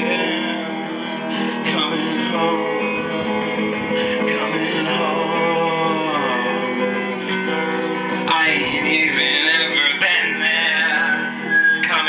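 Acoustic guitar strummed as accompaniment while a man sings into a handheld microphone, his voice sliding up and down in pitch.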